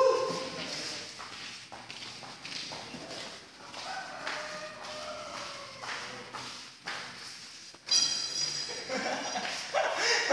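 A dog whining in long, drawn-out tones, echoing in a large hall, with a louder, sharper bark-like burst about eight seconds in.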